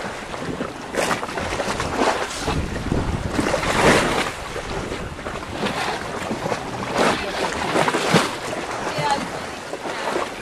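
Shallow sea water splashing and sloshing around people wading and swimming, with wind buffeting the microphone; irregular louder splashes come every second or two.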